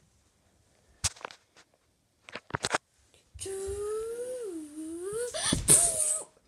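A person hums one long note through the mouth, dipping in pitch and rising again, after a few knocks from toys being handled. A loud rustle comes near the end.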